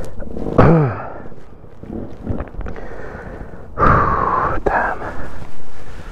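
A man groaning and breathing hard in pain: a short falling groan about half a second in, then a loud breathy exhale about four seconds in.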